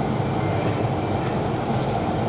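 Steady low background rumble of a railway station, with no distinct events.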